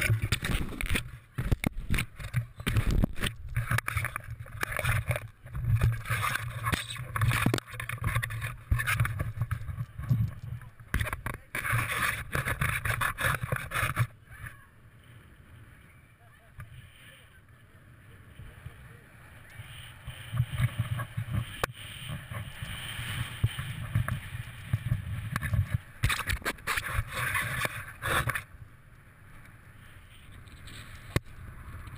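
Handling noise from a body-worn action camera as its wearer climbs about on a steel truss bridge: irregular rustling, scraping and knocks. It is loud at first, drops sharply to a quieter rustle about halfway through, and picks up again in short patches near the end.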